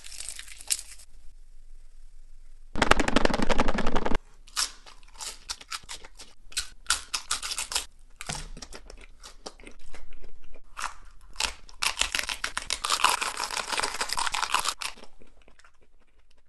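Hot Doritos coated in cheese sauce being bitten and chewed. There is one loud crunching bite about three seconds in, then repeated crunching and wet chewing, thickest a few seconds before the end.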